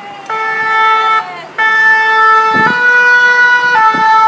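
French two-tone emergency siren on a fire engine, sounding close and loud. It alternates between a high and a low note, each held about a second, with a short break about a second in.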